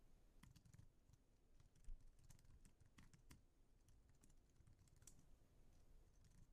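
Faint typing on a computer keyboard: scattered, irregular key clicks with a slightly louder click about two seconds in.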